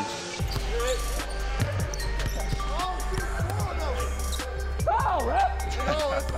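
A basketball bouncing on a hardwood gym floor in repeated sharp strikes, over background music with a steady deep bass line. Voices and laughter come at the start.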